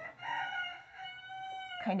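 A hen giving one long, drawn-out call with a clear, steady pitch, in two parts, the second slightly lower, while she is held and her abdomen is wiped.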